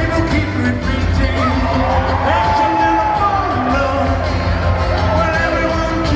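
Live rock band playing with a male lead singer singing into a microphone; one long held note in the middle.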